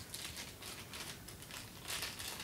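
Protective plastic wrapping crinkling in the hands as a pair of small pencil condenser microphones is unwrapped, in soft, irregular crackles.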